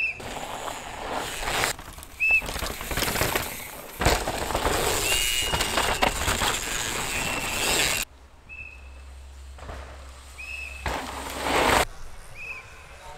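Downhill mountain bikes tearing over rough dirt and rock: tyres crunching and skidding, the bike rattling as it passes, loudest in the middle and changing abruptly at the cuts. Short high whistle blasts recur every couple of seconds, the warning whistles of course marshals.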